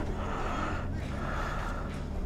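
A person breathing close to the microphone, in soft breaths roughly a second apart, over a steady low hum.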